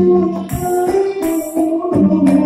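Live jepin dance accompaniment from a traditional ensemble: sustained violin and plucked-string melody over drum strokes and repeated cymbal strikes.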